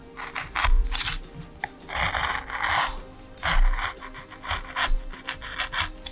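A hand gouge cutting a woodcut block, shaving curls of wood in a series of irregular scraping strokes. The longest cut comes about two seconds in, followed by several short quick cuts.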